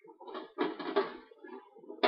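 Handling noise as marinated chops are laid into a baking tray: a rustling, knocking cluster about half a second in, then lighter rustles.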